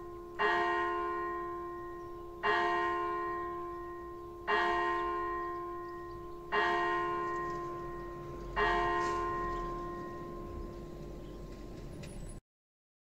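A single church bell tolling, struck five times at an even pace about two seconds apart, each stroke ringing on and slowly fading before the next.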